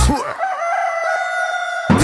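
A rooster crowing: one long cock-a-doodle-doo that rises at first and then holds a high note while the dance beat drops out, with the beat coming back right at the end.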